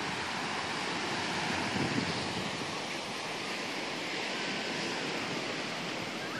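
Baltic Sea surf washing steadily onto a sandy beach, small waves breaking, with wind buffeting the microphone.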